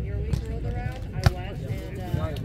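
A volleyball being struck once during a rally, a single sharp smack about a second in, over the chatter of players and onlookers.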